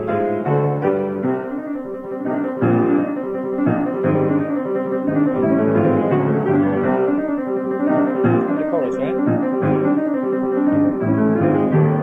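Piano playing a run of struck chords and melody notes, on a home tape recording with a dull sound that lacks its top end.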